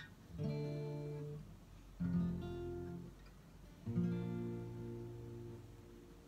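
Steel-string acoustic guitar: three chords strummed about two seconds apart, each left to ring and fade before the next.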